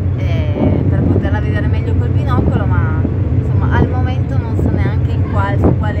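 A woman talking, with short pauses, over a steady low drone from the ferry's engines.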